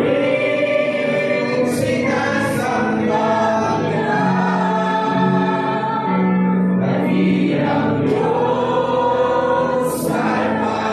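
A congregation singing a Christian worship song together, led by singers on microphones, with long held notes.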